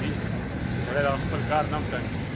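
A man's voice saying a few short words over a steady low rumble of road traffic.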